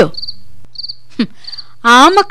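Crickets chirping: short high trills repeating about twice a second over a low steady hum.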